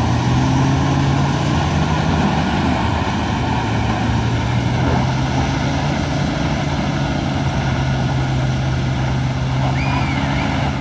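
Engines of a Volkswagen Amarok and a Toyota Land Cruiser pickup running hard at steady high revs, straining against each other through a tow strap, with tyres spinning in loose dirt.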